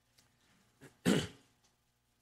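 A man clearing his throat once, about a second in, with a small catch just before it.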